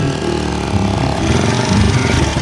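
A quad bike's small engine running steadily as the rider sets off.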